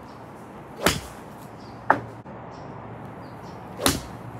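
Golf club swung and striking a ball off a hitting mat, twice about three seconds apart, each a quick swish ending in a sharp strike. A shorter, sharper click follows about a second after the first strike.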